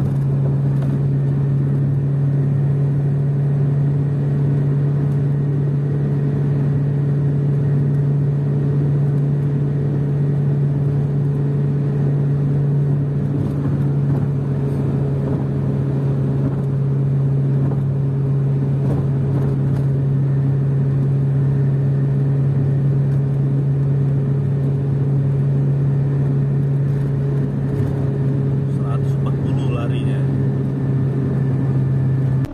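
Steady drone of engine and road noise heard from inside a vehicle's cabin cruising at high highway speed, with a constant low hum.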